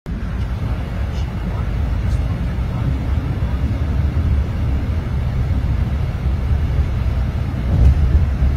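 Steady low rumble of a coach bus's engine and tyres at highway speed, heard inside the cabin.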